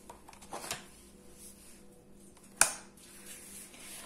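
Handling of a steam cleaner's plastic wand and attachments over quiet room tone: a couple of light knocks about half a second in, then one sharp click about two and a half seconds in.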